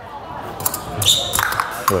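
Steel fencing blades clicking together several times in quick succession, with a short metallic ring from one contact about a second in. Thuds of footwork on the floor come along with them.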